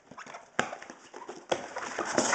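Two sharp knocks about a second apart with faint rustling, from a plastic bag of wet-packed Arag-Alive crushed coral sand being handled.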